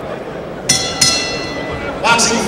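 Boxing ring bell struck twice in quick succession, each strike ringing on and slowly fading, over the murmur of an arena crowd.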